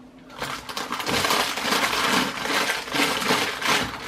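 Crinkly wrapper of a stroopwafel packet being handled, a dense crackling rustle that starts about half a second in and keeps going almost to the end.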